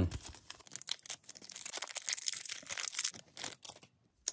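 The foil wrapper of a Pokémon Scarlet & Violet 151 booster pack being torn open and crinkled by hand: a dense, irregular run of crackles that stops just before the cards come out.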